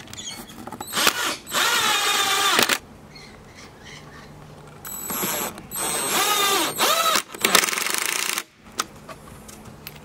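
A cordless driver runs in spurts as it drives wood screws into pine boards: one long run about a second in, then several short runs in quick succession past the middle. The motor whine sags in pitch as each screw seats.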